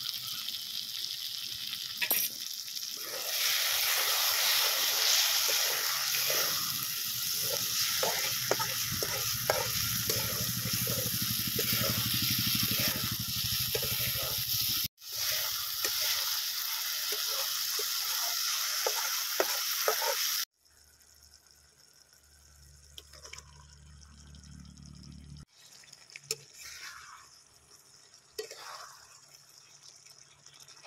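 Onion-tomato masala sizzling in a metal kadai while a flat spatula stirs it, with many short repeated scrapes over a steady sizzle. About two-thirds of the way in, the sound drops abruptly to a much quieter level.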